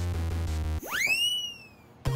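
Looping electronic background music that cuts off under a second in. It gives way to a single synthesized whistle-like sound effect that swoops sharply upward, then slowly falls and fades.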